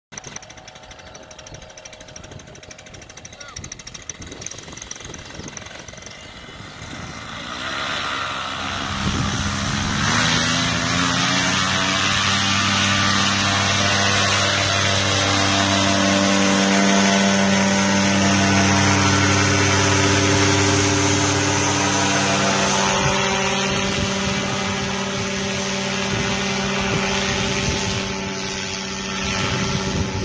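Tandem paramotor engine and propeller: quieter at first, then rising in pitch about eight seconds in as the throttle opens for take-off. It runs loud and steady at high power for the rest of the time, dipping a little near the end as the craft climbs away.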